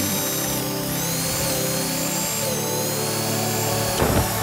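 Electric drill running as a twist bit bores into engineered wood: a steady motor whine whose pitch steps down slightly a little past halfway.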